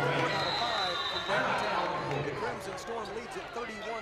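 Many voices talking and calling in a basketball gymnasium, from the crowd and the players. About a third of a second in, a referee's whistle sounds one steady high note held for about a second as play stops for a timeout.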